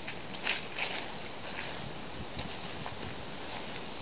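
Steady wind noise on the microphone, with a few brief crunches of footsteps on a dirt track in the first second or so.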